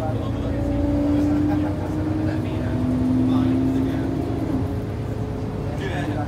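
Ikarus 435 articulated bus running along, heard from inside the passenger cabin: a low engine drone under a steady drivetrain whine that shifts pitch a couple of times.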